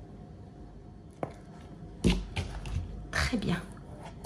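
Hands flexing and rubbing a soft silicone cake mould while pushing a small cheesecake out of its cavity: a single click about a second in, then a cluster of short rubbing and scraping handling noises in the second half.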